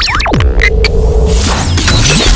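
Synthesized logo-animation sound effects: a deep rumbling drone under pitch sweeps that fall at the start, with a few sharp hits. A held mid-pitched tone runs through the middle, and high swooping whooshes come near the end.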